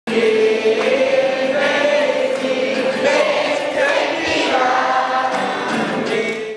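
Choral music: a choir singing long, held notes together.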